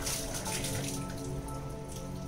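Spring water trickling from a small spout into a stone basin, with a continuous splashing patter.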